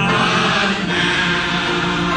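A group of voices singing a slow hymn together, holding long, drawn-out notes.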